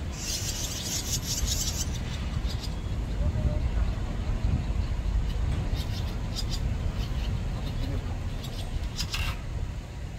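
Barn swallows calling: a burst of rapid high twittering at the start, then scattered short chirps, over a steady low rumble.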